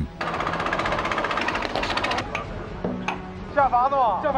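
A steel pipe being cut with sparks flying: a dense, rapid rattling noise that stops about two seconds in. Near the end a man calls out an order in Chinese.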